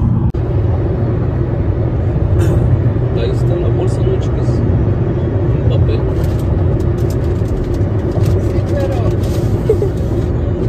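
Steady low road and engine rumble inside a moving car's cabin, with a muffled, indistinct voice. Scattered small clicks and crackles, thickest in the last few seconds.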